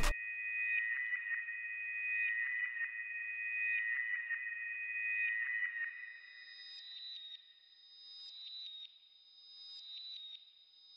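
Layered synth bell from a one-shot kit playing a short repetitive pattern, pitched up an octave and doubled by a reversed copy, with lows and highs cut and distortion, wobble, heavy reverb and left-to-right panning on it. Repeated high bell notes ring on for about six seconds, then the pattern moves higher and thins out, with short gaps near the end.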